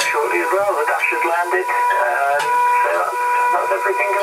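Speech over a two-way radio link: thin, narrow-band radio voice with a steady high tone running under it.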